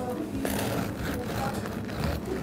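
A knife sawing through a crusty loaf of emmer bread on a cutting board, with faint voices in the background.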